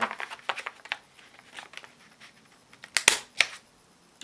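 A stamp being pressed onto a paper page: light handling clicks and rustles, then two sharp knocks about three seconds in as the stamp comes down.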